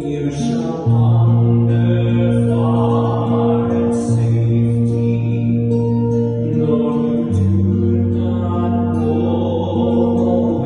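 Small mixed choir singing a slow hymn in long held chords with acoustic guitar accompaniment; the chord changes about every three seconds.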